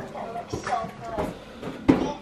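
Quiet talking, with one sharp click shortly before the end.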